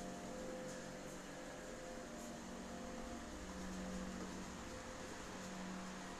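Steady faint mechanical hum of indoor room tone, with a low steady tone running through it, typical of a fan or air-conditioning unit.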